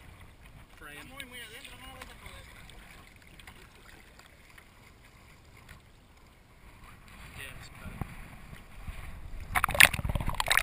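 Small waves lapping around a camera held at the surface of shallow sea water, quiet for most of the stretch; near the end it turns to splashing and gurgling clicks as the camera dips under the water.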